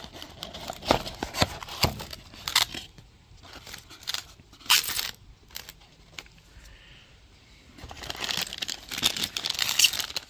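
Cardboard parts box being opened and small plastic parts bags crinkling as they are handled: a string of short rustles and clicks, quieter in the middle and busier again near the end.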